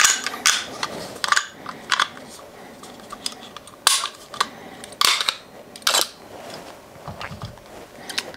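Walther PDP pistol being field-stripped by hand: a dozen or so sharp metallic clicks and clacks of the slide and takedown parts at irregular intervals, the loudest near the start and around four and five seconds in, as the slide comes off the frame.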